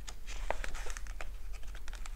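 Sheets of printed paper rustling and crackling as the pages of a booklet are handled and turned by hand, heard as a run of short, irregular crackles close to the microphone.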